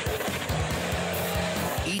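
A rock crawler's engine running under load as the buggy climbs a near-vertical dirt wall, heard under a steady background music track.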